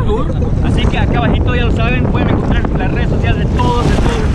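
Strong wind buffeting the microphone, a loud steady low rumble, with a person's voice talking through it.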